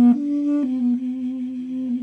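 Armenian duduk playing a slow lullaby melody: long held low notes, stepping up to a slightly higher note and back down within the first second, with small ornamental dips in pitch.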